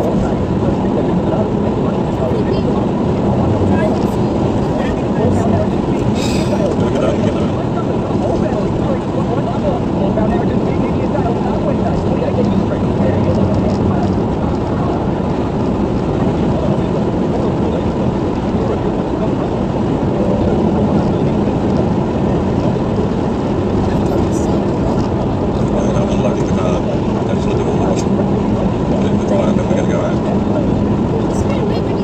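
Steady road noise inside a car cruising at highway speed: tyre roar and engine hum heard through the cabin, holding level throughout.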